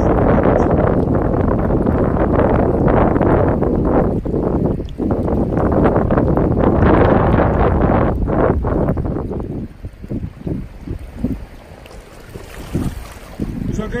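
Wind buffeting the microphone over shallow river water, loud and steady, dropping away about ten seconds in to leave a quieter, uneven sound of water around the angler's hands.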